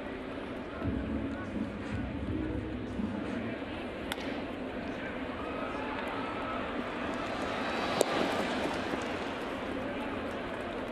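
Ballpark crowd murmur with voices in it. A sharp crack, the bat hitting a ground ball, comes about four seconds in, and a louder sharp pop comes about two seconds before the end.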